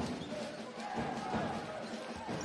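Basketball being dribbled on a hardwood court, a few bounces in two seconds, over the steady murmur of the arena crowd.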